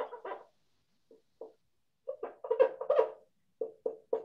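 Writing on a board: a series of short squeaky strokes in quick clusters, a few at the start, two brief ones just after a second in, and a busier run from about two seconds on.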